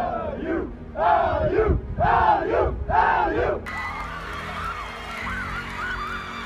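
A team in a huddle shouting a chant in unison: four loud calls about a second apart. Near the middle the sound cuts suddenly to a noisier background with scattered higher shouts.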